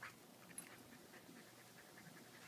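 Near silence: quiet room tone, with a faint click about half a second in.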